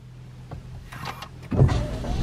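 Daihatsu Rocky being started from inside the cabin: after a quiet moment, about one and a half seconds in, the engine cranks and catches and keeps running, and the windscreen wipers start to sweep at the same time.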